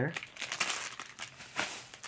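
Clear plastic packaging crinkling as it is handled in the hands, an irregular crackle lasting most of the two seconds.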